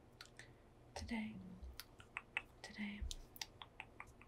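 Long fingernails tapping and clicking in an irregular run of light, quick ticks, with a couple of soft swishes of dry hands moving, about a second in and again near three seconds.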